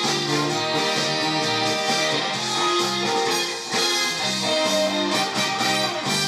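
Band music playing a song without words, with a brief dip in level a little past the middle.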